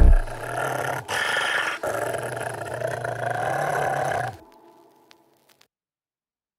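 A dog growling in three long stretches, with short breaks about one and two seconds in, stopping about four and a half seconds in.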